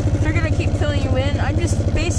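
Side-by-side utility vehicle's engine running steadily with a regular pulsing beat as it drives along, with a man talking over it.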